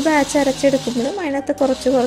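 Speech: a woman's voice talking, with no clear machine sound beneath it.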